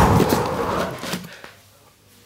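Cardboard of the MacBook Pro's box being handled and slid. A burst of scraping and rustling fades away over about a second and a half.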